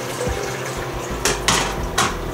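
Water pouring from a metal pitcher into a mixing tank: the water being added to start a batch of Kodak film fixer. Two sharp knocks a little past a second in.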